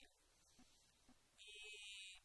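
Near silence: room tone, with a brief faint high hiss about a second and a half in.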